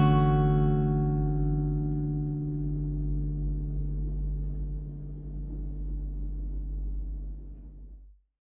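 A final Dmaj7 chord on a Cort GA-PF Bevel acoustic guitar left to ring out, its notes fading slowly and dropping away at the very end.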